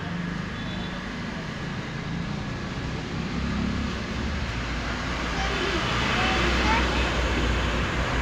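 Road traffic noise: a low vehicle rumble that builds from about halfway through and grows louder toward the end.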